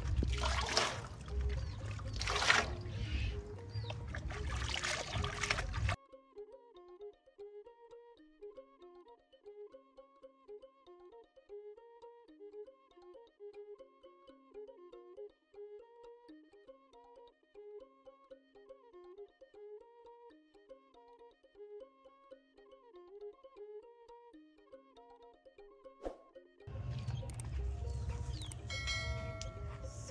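Hands splashing and rubbing drinking straws in a basin of water for about six seconds. The live sound then cuts out to a soft instrumental melody of clear, evenly paced notes for about twenty seconds, and live outdoor sound returns near the end.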